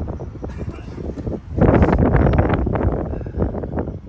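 Wind rumbling on the microphone, with a stretch of indistinct talk in the middle.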